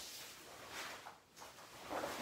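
Faint swishes and rustles of a karate gi as the wearer punches and steps slowly, three or four short swishes in all.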